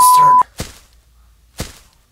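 A loud, steady high beep, a censor bleep laid over a spoken word, cutting off sharply about half a second in. Two sharp thwacks follow, about a second apart.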